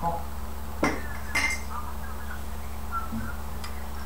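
A few sharp clinks of kitchenware being handled, two close together about a second in and a fainter one near the end, over a steady low hum.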